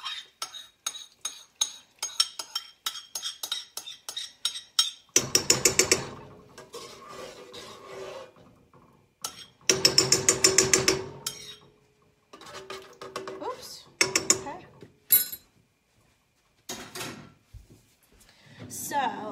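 A utensil scraping and tapping a creamy mixture out of a bowl into a metal pot, with quick clicks at first. Then come spells of fast stirring against the pot, loudest about five and ten seconds in.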